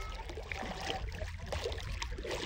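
Shallow lake water swishing and lapping around the legs of a person wading, over a steady low rumble.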